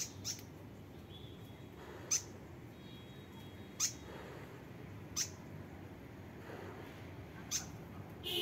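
About six short, sharp, high chirps from a fantail, each dropping in pitch, spaced a second or two apart.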